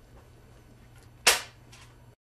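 One sharp snap, like a small hand tool or fastener going off, about a second in, against faint room tone, from hand work at a padded mannequin form.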